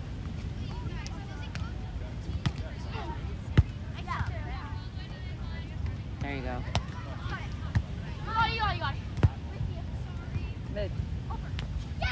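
A volleyball being struck during a beach volleyball rally: a few sharp smacks of hands and forearms on the ball, the loudest about three and a half seconds in, with voices calling in the background.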